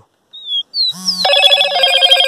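Caged male caboclinho giving a few short whistled notes that slide down in pitch. From a little over a second in, a louder, rapidly pulsing ringing of several steady tones at once takes over, like an electric telephone bell.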